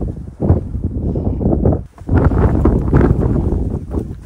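Wind buffeting the phone's microphone: a loud low rumble that comes in gusts and drops away briefly just before the two-second mark.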